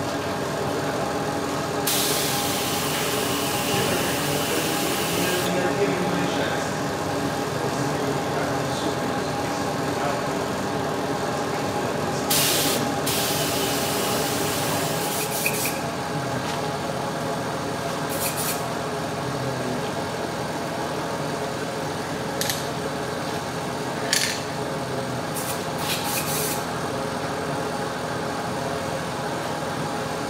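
Aerosol spray paint can hissing in bursts: one long spray of about three seconds near the start, then several short ones of under a second. A steady motor hum runs underneath.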